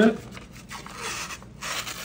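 Paper wrapper being peeled off a Pillsbury Grands refrigerated biscuit can: a dry tearing and rubbing rustle of paper coming away from the cardboard tube, a little louder near the end.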